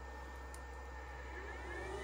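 Faint steady electrical hum; about a second and a half in, a faint high whine from the bench DC power supply rises in pitch and then holds as it starts charging the LiFePO4 battery again.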